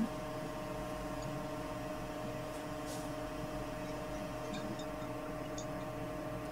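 A steady electrical hum with several fixed tones over faint room noise, with a few very faint ticks.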